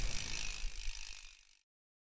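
Mountain bike rear hub ticking as the wheel freewheels, fading away over about a second and a half.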